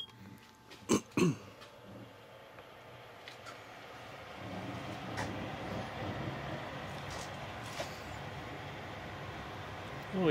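A keypad beep and two sharp clicks, then a 1984 Sanyo microwave-convection oven starting up: a steady running noise with a low hum that builds over a couple of seconds and then holds. Its belt-driven convection fan turns slowly, at about two or three hundred rpm.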